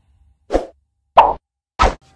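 Three short popping sound effects, evenly spaced about two-thirds of a second apart, the second the loudest.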